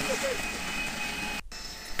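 Wet-dry vacuum running as its black hose wand sucks leaves out from under a hot tub: a steady rushing hum with a thin whistle. It cuts off abruptly about one and a half seconds in, leaving a quieter hum.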